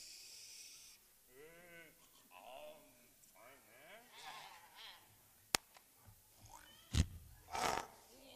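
Young actors making wordless vocal noises, wavering bleat-like calls and grunts, as cavemen on stage. A sharp click comes about five and a half seconds in and a thump a second or so later.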